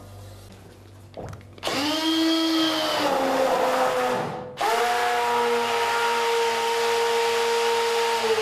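Hand-held stick (immersion) blender running in an enamel pot of cold-process soap batter, oils and lye solution being blended until the mass thickens. It starts about a second and a half in, its pitch sinking over the first second, stops briefly around four seconds in, then runs steadily again.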